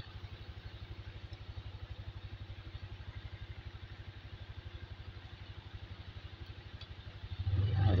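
Motorcycle engine idling with a steady, even, fast beat.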